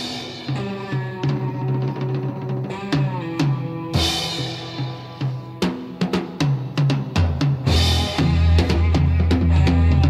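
Blues-rock power trio playing an instrumental stretch: a drum kit with steady hits and cymbal crashes at the start and about four and eight seconds in, over electric guitar and bass. The bass grows heavier from about three-quarters of the way through.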